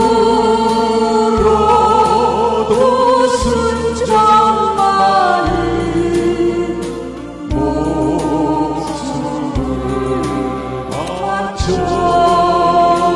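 A man and a woman singing a Korean duet together into microphones, with sustained, sliding vocal lines over an instrumental accompaniment whose bass changes note every second or two.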